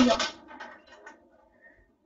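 The end of a child's spoken word, then faint taps and scrapes of the Big Ouch game's plastic tower and base being handled and fitted together.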